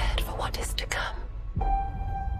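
Film-trailer soundtrack: a deep low drone under a few short whispered words. About one and a half seconds in, a sustained high synth tone starts suddenly.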